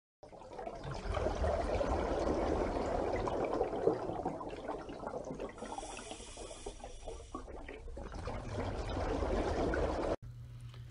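Steady sound of moving water, a dense bubbling and rushing that fades in at the start, eases off in the middle and swells again before cutting off at the end.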